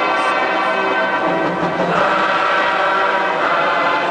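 Large men's glee club singing held chords, the chord changing about two seconds in and again near the end.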